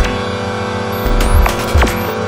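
Improvised experimental electronic music: steady droning tones under irregular deep low pulses, with scattered clicks and short upward-gliding glitchy squeaks.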